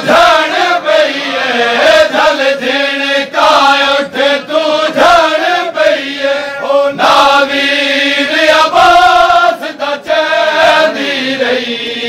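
A crowd of men chanting a Punjabi noha lament in unison, with rhythmic chest-beating (matam) strikes keeping time under the voices.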